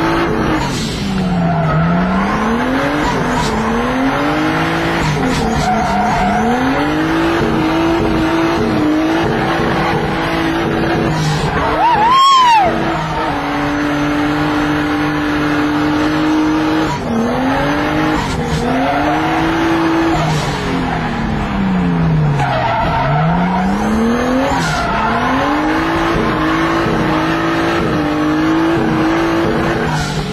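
Car engine heard from inside the cabin, accelerating hard through the gears: the revs climb, drop at each gear change and climb again, with a spell of steady cruising in the middle. A brief loud squeal about twelve seconds in.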